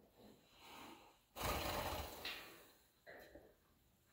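Horse snorting: one loud, noisy blow of air through the nostrils starts suddenly about a second and a half in and fades within about a second. Fainter breathy sounds come just before and after it.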